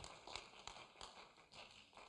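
Near silence: room tone, with two faint taps in the first second.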